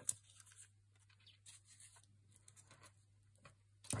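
Faint handling of small card pieces on a craft mat: soft scrapes, rustles and light taps of card being slid and turned, with one short louder sound right at the start.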